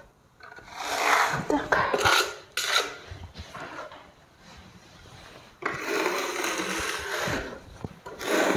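Steel plastering float scraping across gypsum plaster on a wall, smoothing it level: three short strokes in the first few seconds, a quiet pause, then one longer steady stroke from about halfway to near the end.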